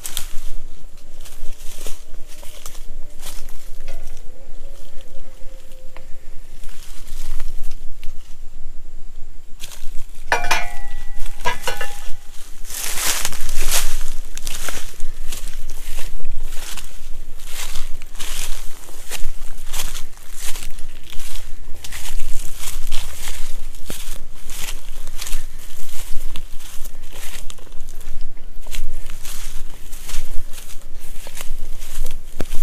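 Footsteps crunching through dry grass and undergrowth at a steady walking pace, close up. About ten seconds in there is a short run of rapid clicks with a ringing tone.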